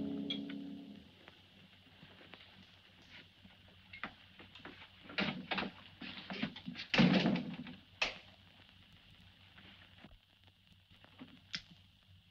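Film score music fading out, then scattered knocks and thumps in a small room, busiest in the middle, the loudest about seven seconds in.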